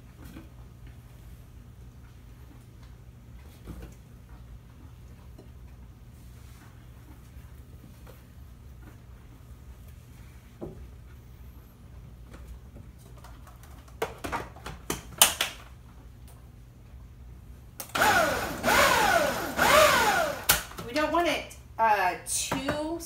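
Strawberries dropped by hand into a countertop blender jar with faint soft knocks. About two-thirds of the way in, the blender motor is pulsed in a few short bursts, then in longer pulses near the end whose pitch rises and falls with each pulse, coarsely chopping the strawberries.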